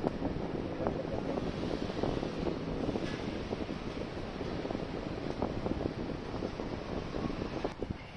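Steady low rumble and hiss on the microphone, with faint scattered clicks from hands working wires into an electric scooter's deck. The rumble drops suddenly near the end.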